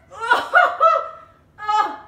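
A woman laughing in short bursts: three quick ones, then one more near the end.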